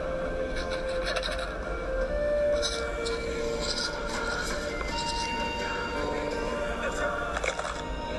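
Animated film soundtrack playing from a laptop's speakers: music with voices over it.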